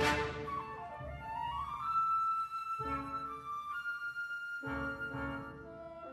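Wind ensemble playing a live concert piece. A loud chord rings away at the start into a softer passage of held notes, with a high sustained note from about two seconds in.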